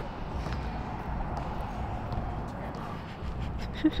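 Steady low background noise with a few faint clicks, and no clear ball bounces. A person laughs briefly right at the end.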